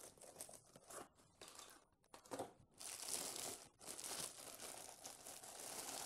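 Clear plastic bag crinkling and rustling as a car stereo head unit is handled out of its packaging. Scattered rustles at first, then steadier crinkling for the last three seconds or so.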